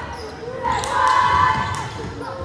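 Basketball being dribbled on a hardwood gym floor, a few bounces sounding in the large, reverberant hall over the voices of spectators.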